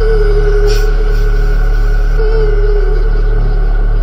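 Electronic bass music: a deep held bass under a pulsing low synth pattern and a sustained synth tone that dips in pitch about every two seconds, with a brief noisy swish about a second in.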